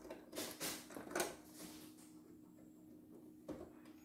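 Small clicks and handling noises as hands fit and tighten a part at the presser-foot and needle area of a CNY E960 embroidery machine: a few taps in the first second and a half, a quiet stretch, then another click near the end, over a faint steady hum.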